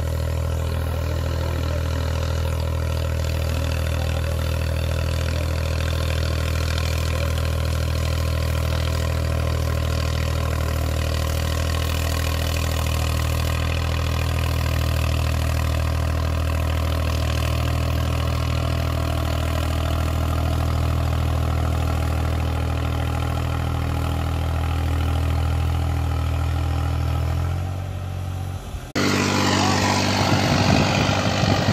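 New Holland 5620 65 hp tractor's diesel engine running steadily under load while pulling tillage implements in the field. Near the end the sound dips, then switches abruptly to a louder, rougher engine sound.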